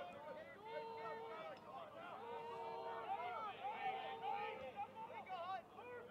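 Faint shouts and calls from several lacrosse players and the bench on the field, overlapping, with a few drawn-out calls.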